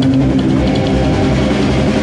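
Live punk rock band playing loudly: electric guitar and bass with drums.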